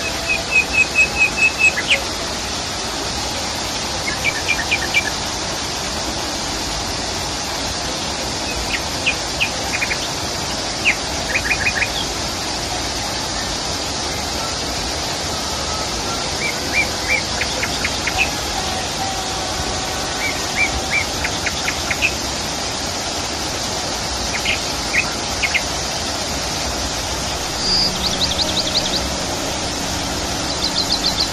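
Steady rush of a small waterfall splashing into a pond, with a bird chirping over it in short runs of quick notes every few seconds, and a higher, faster run of notes near the end.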